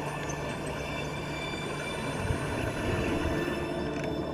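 Underwater rush of air bubbles as a diver inflates an orange delayed surface marker buoy from a regulator, growing stronger in the second half.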